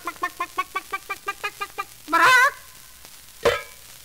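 Recorded hen clucking in a quick run of short clucks, then a louder squawk about two seconds in and a single short sharp sound near the end: the hen laying a golden egg on command.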